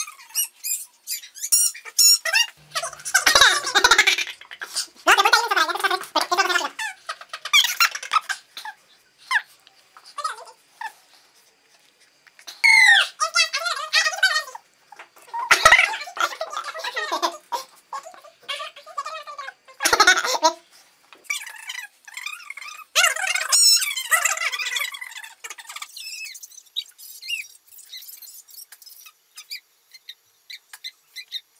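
Fast-forwarded voices: talk sped up into high-pitched, squeaky chatter, in bursts with short pauses, growing fainter near the end.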